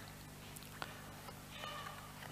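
A quiet pause: faint room tone with a steady low hum, one soft click a little under a second in, and a brief faint high-pitched squeak near the end.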